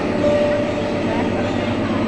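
Steady rumble and hum of a train at a station platform, with faint voices mixed in.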